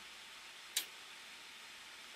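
Quiet room tone with one brief, sharp hiss-like sound a little under a second in.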